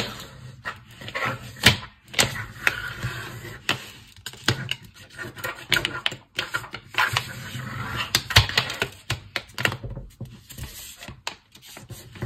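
A pencil pressed hard and rubbed along the fold of a folded paper plate to crease it: scraping strokes of the pencil over the paper, with irregular clicks and taps.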